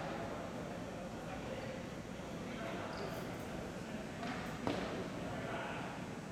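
Echoing gym-floor ball hockey play: distant players' voices and scattered clacks of sticks on the ball and floor, with one sharper crack late on.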